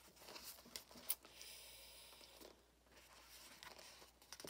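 Faint rustling and light taps of a paperback picture book's pages and cover being handled and turned around: a few small clicks, then a soft rustle lasting about a second.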